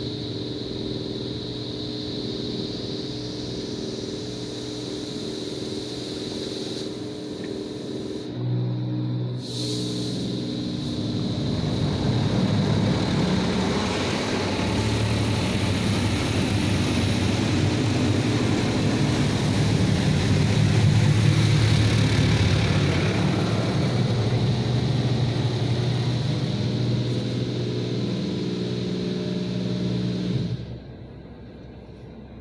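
A Mark VII AquaJet XT touchless car wash working over the car, heard from inside the cabin: a steady machine hum at first, then high-pressure water spray drumming on the body and glass from about eight seconds in, growing louder and running until it cuts off abruptly at the end.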